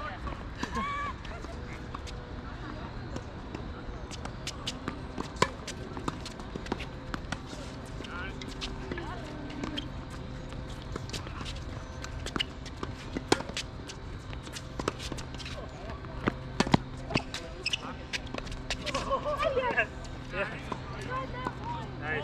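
Tennis balls bouncing on an outdoor hard court and being struck with rackets, heard as a scattering of sharp knocks and pops, with sneaker footsteps. Voices come in briefly near the end, over a faint steady hum.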